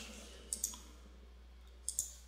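Faint small clicks of a person taking a sip of water: a pair of clicks about half a second in and another pair near the end.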